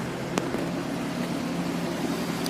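Steady low hum of an idling car engine, with a single light click about half a second in.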